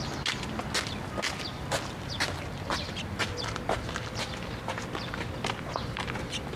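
Eurasian tree sparrow pecking millet seed off a concrete post: sharp, irregular taps of its beak, about two or three a second.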